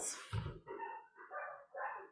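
A dog barking: about four short barks in quick succession, fainter than the voices around them.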